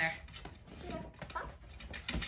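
Small curly-coated dog whimpering faintly while being fed treats, with a few light clicks.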